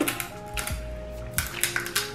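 Soft background music with sustained notes, over several sharp clicks and crackles of eating, as crab shell is bitten and picked apart.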